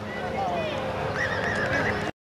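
Sideline spectators shouting and yelling, with a falling call about half a second in and a high, held yell near the end.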